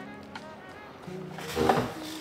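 Soft background music with held low notes, and a short louder swell near the end.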